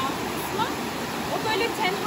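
Steady rushing of flowing water, with a voice heard briefly near the end.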